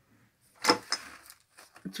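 Rolls of double-sided tape clattering as a hand pulls them out of a shelf basket: one sharp clatter about two-thirds of a second in, then lighter clicks and rustling.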